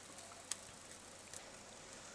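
Faint sizzle of eggs frying in butter in a nonstick pan, with a few small crackling ticks, the sharpest about half a second in.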